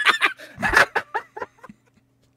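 A man laughing in a run of short bursts for about a second and a half, then falling quiet.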